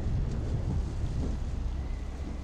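Low rumbling sound effect, swelling at the start and easing off toward the end.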